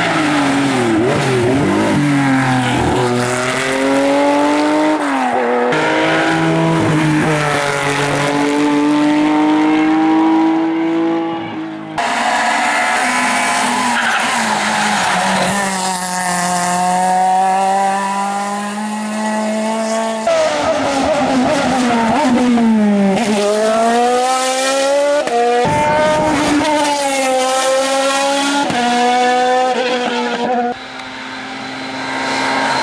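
Race car engines at full throttle on a hill climb, one car after another with abrupt changes between them about twelve and twenty seconds in. Each engine note climbs as the car accelerates and drops sharply at every gear change.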